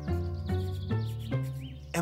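Background music: a light melody of short notes, changing about every half second, over held low notes.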